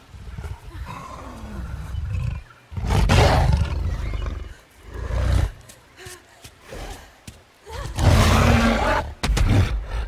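Giant gorilla roaring in a film soundtrack: a long, deep roar about three seconds in and another about eight seconds in, with shorter growls between.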